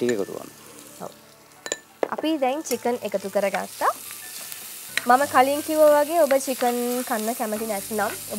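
Chicken pieces frying in a pan as a spatula stirs them. The sizzle grows louder about two seconds in, with a person's voice over it.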